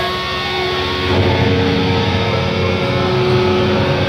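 Hardcore punk band playing live through a venue PA: distorted electric guitars, bass and drums. The low end gets heavier and louder about a second in.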